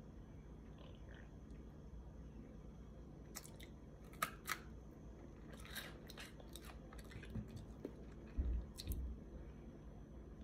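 Faint chewing of bread, with scattered crisp clicks and crunches starting about three seconds in, and a low thump near the end.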